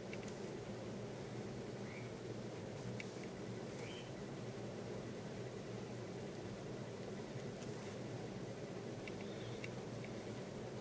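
Quiet steady background hum with a few faint clicks and short high squeaks, from fingers working a porcupine quill onto a thread.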